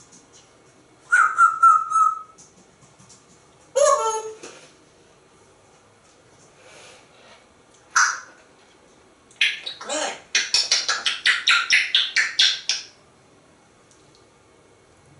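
African grey parrot vocalizing. It gives a short call that ends in a whistled note about a second in, a falling call around four seconds, and a sharp brief call near eight seconds. Near the end comes a rapid run of repeated chirps, about six a second, lasting a few seconds.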